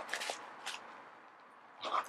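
Zipper on a small fabric makeup bag being pulled closed in short strokes: a rasp at the start, a brief one just under a second in, and another near the end.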